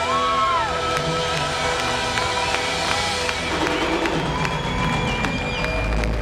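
Live Irish folk band playing sustained, held notes near the end of a song, with the audience cheering, whooping and starting to clap over the music.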